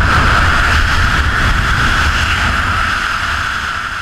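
Freefall wind rushing over the camera microphone: a loud, steady roar with a hissing band running through it.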